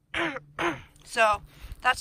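Speech only: a woman talking in short phrases.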